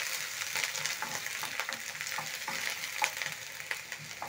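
Diced onion sizzling in cooking oil in a nonstick frying pan, with irregular light scrapes and taps of a wooden spoon stirring it.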